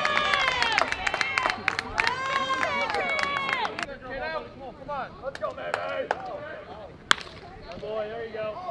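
Ballplayers shout and cheer over one another, with scattered claps and hand slaps, for the first four seconds; quieter voices follow. About seven seconds in comes a single sharp crack of a bat hitting the ball.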